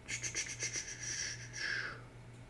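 Mobile phone alert for an incoming text message: a rapid run of high, fluttering pulses, ending in a short, lower tone.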